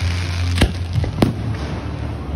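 Fireworks going off: a steady hiss and crackle from rockets climbing, with two sharp bangs under a second apart.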